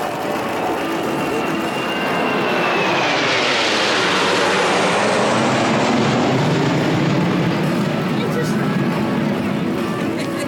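Blue Impulse Kawasaki T-4 jets flying past. The noise swells to its loudest about four to six seconds in, with a whine that falls in pitch as they pass, then settles into a lower rumble as they move away.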